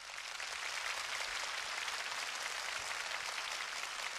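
Studio audience applauding, a steady even clapping that rises in at the start as the song's music fades out.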